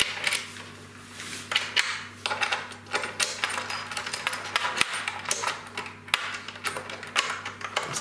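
Small supplied metal wrench turning a nut on a bolt in a steel table-leg corner bracket, giving an irregular run of light metallic clicks and rattles as the nut is tightened. A faint low hum runs underneath.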